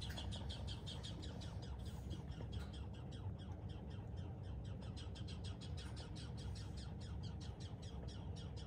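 Red squirrel chattering: a long, steady run of short, high, clicking notes, about seven a second.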